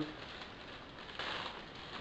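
Clear plastic bag of hardware crinkling as a gloved hand handles it, a faint rustle that gets louder for a moment a little past the middle.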